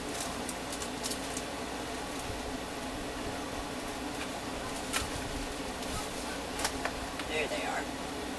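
Scattered sharp clicks and light knocks of craft supplies being handled and moved about during a search for a newly bought pack, over a steady low hum. There is a quick run of clicks at the start and single louder clicks about five and seven seconds in.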